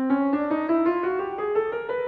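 Grand piano playing an ascending chromatic scale, one key after another in even half steps, climbing steadily through the octave at about four to five notes a second.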